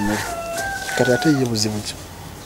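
A rooster crowing in one long held call, with a voice underneath.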